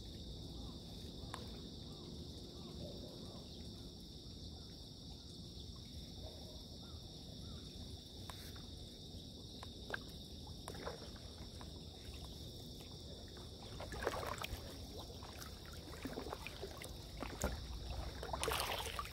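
Stand-up paddle strokes in calm water: the blade dipping and pulling with splashes and drips, louder about two-thirds of the way in and again near the end, over a steady high-pitched insect chorus.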